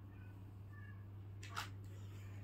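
Quiet room tone with a steady low hum, a few faint short high tones in the first second, and one brief rustle about one and a half seconds in.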